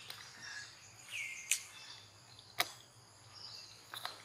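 Outdoor ambience with faint bird and insect calls and one short falling chirp about a second in. Three or four sharp clicks stand out as the loudest sounds.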